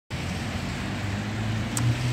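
A motor vehicle engine running steadily with a low hum over a background hiss, and a brief tick near the end.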